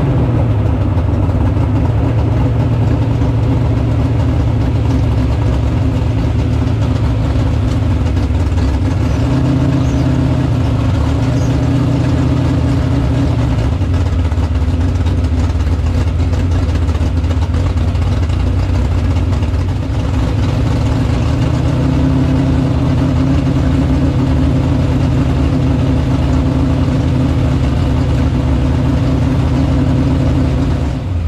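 Chevrolet Vega drag car's engine running steadily at low speed, heard from inside the stripped cabin, with small steps up in pitch about nine seconds in and again a little after twenty seconds.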